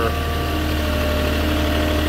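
Moffett truck-mounted forklift's engine running at a steady low hum while it moves beside the flatbed.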